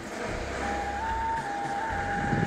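A road vehicle running, heard as a steady low rumble with a thin high whine that starts about half a second in and shifts slightly in pitch.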